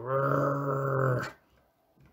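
A person's voice growling a long, steady 'Grrrr', the made-up grumbling word 'Grrrurrrughuskgj' read aloud as an angry mutter under the breath. It stops just over a second in.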